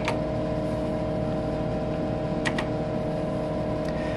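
Steady electrical hum of a Tektronix 4054A vector graphics computer running, with a few soft key clicks on its keyboard: one at the start, two close together about two and a half seconds in, and one near the end.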